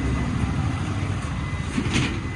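Steady low rumble of street traffic, with a faint high steady tone coming in near the end.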